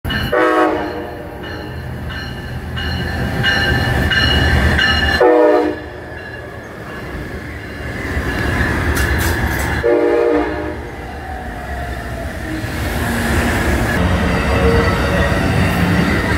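Amtrak Pacific Surfliner passenger train arriving at a station and rolling past close by, with a continuous low rumble of wheels on rail. Three short horn blasts come roughly five seconds apart.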